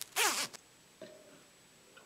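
A hoodie's zipper pulled once in a quick stroke of about a third of a second, falling in pitch as it goes.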